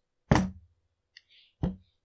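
Two sharp knocks about a second and a half apart, with faint small clicks between them: a hand tool handled and set down on a workbench while a chainsaw fuel line is trimmed.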